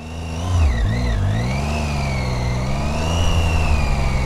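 Triumph Tiger 800's three-cylinder engine pulling away and accelerating. Its pitch dips briefly about a second in, then rises and holds steady.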